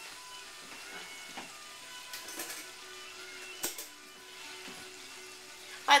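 Faint background music with slow held notes over a low sizzle of ground sausage frying in a skillet. A single sharp click comes about three and a half seconds in.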